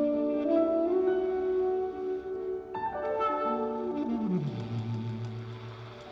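Tenor saxophone and grand piano playing a jazz duo: the saxophone holds a melody over the piano, then steps down to a long low held note in the second half while the music grows softer.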